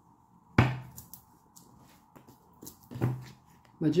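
Two sharp knocks on a wooden tabletop, about two and a half seconds apart, as tarot cards are slapped down, with faint ticks of card handling between.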